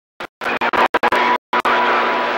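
CB radio receiver putting out rough, static-filled signal in bursts that cut in and out abruptly, with dead silence between them. A steady whistle runs through the noise in the second half.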